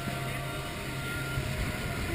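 Outboard motor of a speedboat running at speed: a steady low drone under a rush of wind and water.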